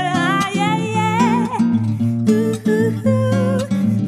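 Woman singing a slow MPB melody with vibrato over an acoustic guitar. The voice breaks off a little under halfway through, then comes back more softly while the guitar keeps playing.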